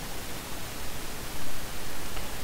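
Steady hiss, the background noise of a voice-over microphone recording.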